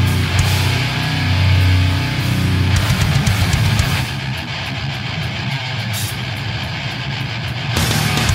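Technical thrash/death metal recording: distorted electric guitars, bass and drums playing a fast riff. About four seconds in, the bright top of the mix drops away, leaving the chugging riff and drums, and it comes back just before the end.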